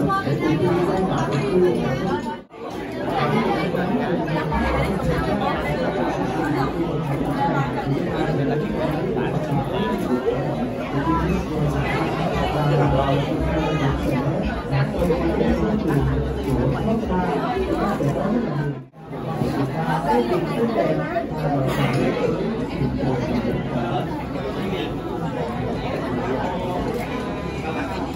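Crowd chatter in a large hall: many voices talking over one another, with no single speaker standing out. The sound briefly cuts out twice, about two and a half seconds in and again near nineteen seconds.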